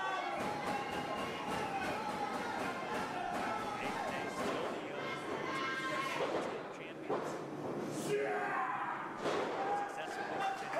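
Voices in the crowd shouting and chattering, then three sharp thuds in the last few seconds as wrestlers grapple and hit the ring canvas.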